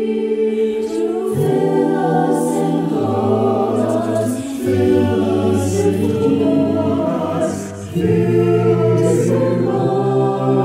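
Mixed-voice a cappella choir singing held chords in close harmony. Low bass voices come in about a second in, and the sound dips briefly before the chords swell again near the end.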